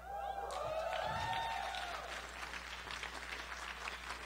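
Audience applauding, with several voices cheering over the clapping in the first two seconds.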